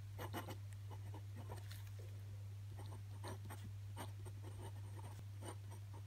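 Glass dip pen scratching across paper as it writes in cursive, a run of short, irregular strokes with small pauses between letters. A steady low hum runs underneath.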